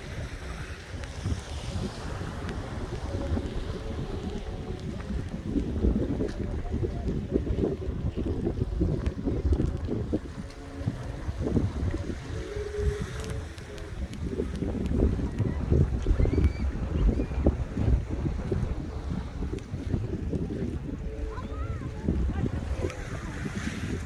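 Wind buffeting a phone microphone in uneven gusts, a low rumbling noise that swells loudest about two-thirds of the way through.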